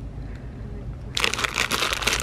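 Plastic Haribo Sour Bats candy bags crinkling as a hand pushes and handles them on the shelf, starting about halfway in.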